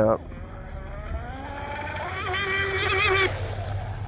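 Whine of an RC catamaran's Traxxas 380 brushless motor and propeller running at speed, rising in pitch over the first two seconds, then louder and warbling until it drops away a little over three seconds in. The owner reckons the prop is too much for this setup.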